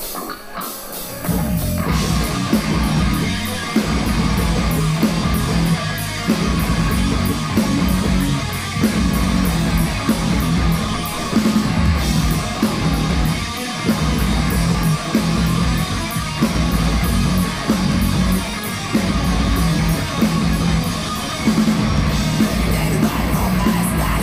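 A heavy metal band playing live through a PA, with distorted electric guitars, bass and drums. The full band comes in about a second in, and fast, even cymbal strokes run under the riff.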